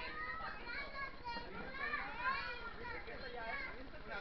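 Overlapping voices of several people, children among them, talking and calling out at once, with no clear words.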